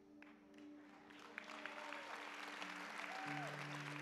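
Audience applause building up about a second in, over soft music of held chords, with a lower note joining near the end.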